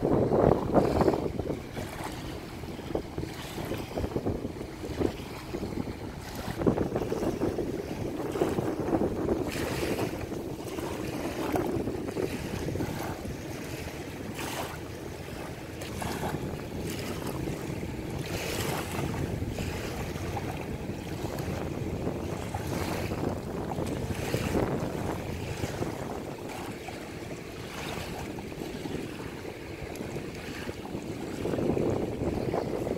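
Wind buffeting the microphone over small waves lapping at the shore, with scattered knocks and rustles as a small sailboat's mooring line is untied and the boat is handled and boarded.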